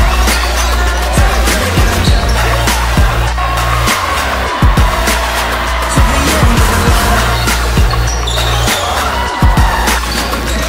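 Background music with a heavy bass and a steady beat.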